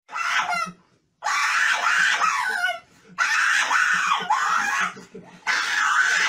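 Small dog screaming in high, wavering cries, about four long ones with short breaks between, out of fear of being handled by the vet.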